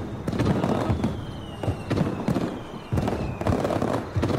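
Aerial fireworks going off: a quick run of bangs and crackles as shells burst, with a thin whistle slowly falling in pitch through the middle.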